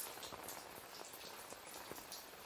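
Faint, steady patter of falling water, with many scattered drop ticks.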